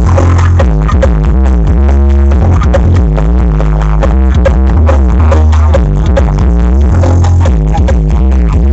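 Loud electronic dance music played through a large outdoor sound-system speaker stack, with a deep bass line dominating.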